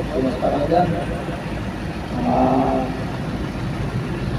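Low, steady traffic and engine rumble heard from inside a car in slow city traffic, with a person's voice in the first second and a short held tone a little past halfway.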